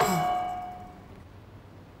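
A single bright clink at the very start, ringing with several tones and fading away over about a second.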